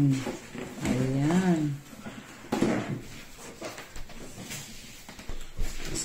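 Rolled inflatable stand-up paddle board being stuffed into its backpack bag: irregular rustling of stiff PVC and bag fabric with small knocks and bumps.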